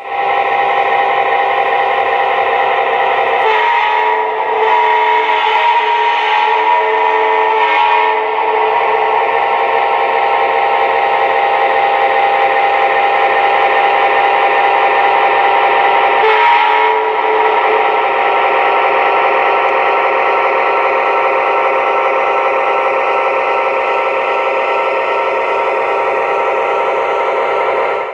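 Sound from an O-scale model train's locomotive sound system: a steady drone made of many held tones, which shifts about four seconds in and again about sixteen seconds in, then cuts off suddenly at the end.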